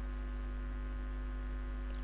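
Steady electrical mains hum with a stack of overtones, unchanging throughout.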